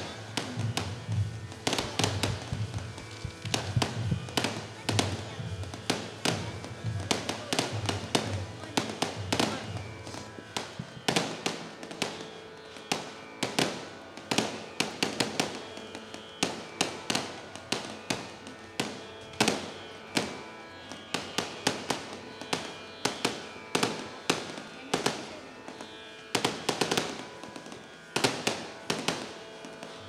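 Aerial fireworks going off: a continuous run of sharp cracks and bangs, several a second, with no let-up.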